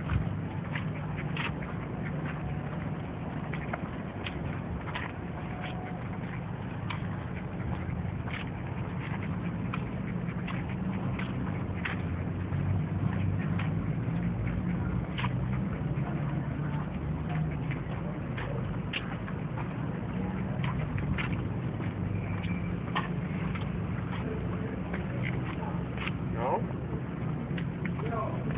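Outdoor walking noise: a steady low rumble under frequent light, irregular clicks and taps.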